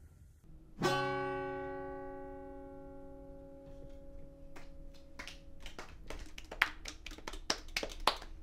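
A single chord strummed on an acoustic guitar about a second in, left to ring and slowly fade over several seconds. In the second half come scattered, uneven sharp claps.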